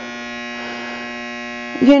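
A steady electrical hum with a buzzy edge, holding one unchanging pitch.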